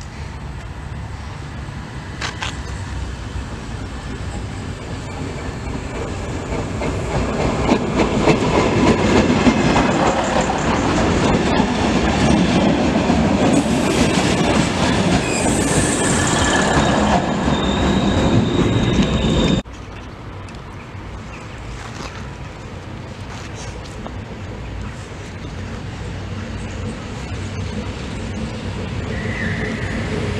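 SN84 diesel multiple unit approaching and passing close by: its rumble and wheel noise swell to a loud peak as it goes past, with a thin wheel squeal. About two-thirds through, the sound cuts off abruptly. An electric locomotive hauling passenger coaches is then heard approaching, growing louder toward the end.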